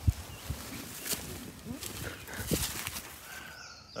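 Rustling and irregular knocks and thumps of handling and movement as a person in a leafy camouflage suit moves while holding a shot wild turkey.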